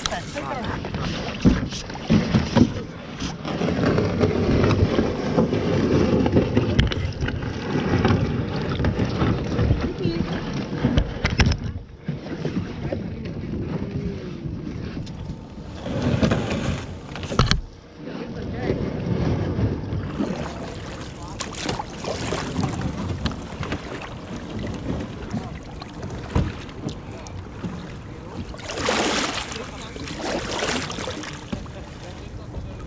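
Wind rumbling on a kayak-mounted camera's microphone on open water, with occasional knocks and rustles as the angler moves about in the kayak.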